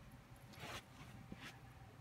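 Near silence: a small dog moving about on carpet, with a faint short noise just past the middle and a faint tick near the end.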